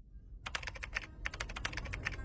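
Computer keyboard typing: quick, irregular keystroke clicks starting about half a second in, over a low background rumble.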